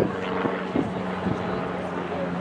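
A steady low drone of a distant engine, under faint voices.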